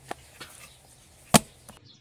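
Pizza dough being worked by hand in a plastic bowl: a few sharp knocks as the dough is pressed and slapped against the bowl, one much louder than the rest.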